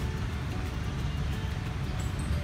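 A steady low rumble of outdoor background noise, with faint music over it.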